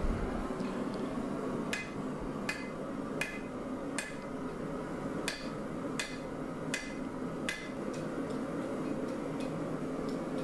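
Hand hammer striking a welding-hot layered steel billet on an anvil: about nine evenly spaced blows, one every 0.7 seconds or so, starting a couple of seconds in and stopping well before the end. These are the first blows of a forge weld, setting the fluxed layers of 1084 and 15N20 together. A steady hum runs underneath.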